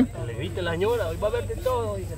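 People talking: the voices of onlookers near the camera, over a steady low rumble.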